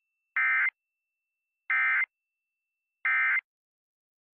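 Emergency Alert System end-of-message data tones: three short, identical, buzzy bursts of digital SAME (FSK) data about a second and a half apart, marking the end of the alert.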